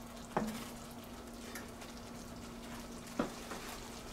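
Thick tomato sauce simmering and bubbling in a stainless steel pan as a spatula stirs it, with two short knocks, about half a second in and near the end, and a steady low hum underneath.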